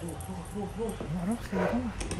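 A low-pitched voice, quieter than the surrounding talk, making speech-like sounds with pitch rising and falling in short syllables but no clear words.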